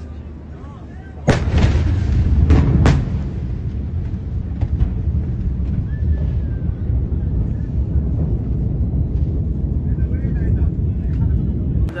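Blast of a very large ammonium nitrate explosion reaching the microphone: a sudden heavy boom about a second in, a couple of sharp cracks over the next two seconds, then a long low rumble that keeps on.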